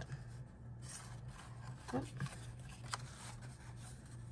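Cardstock being handled: a brown paper strip rubbing and sliding over a yellow card base, with a faint sharp tick near three seconds.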